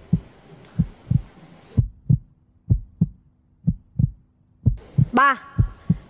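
Suspense heartbeat sound effect: pairs of low thumps, about one pair a second. A low steady drone joins about two seconds in and stops about five seconds in, and a voice calls out near the end.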